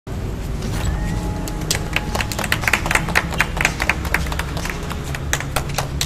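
A few people clapping by hand, with scattered, uneven claps that thicken after the first second, over a low steady rumble.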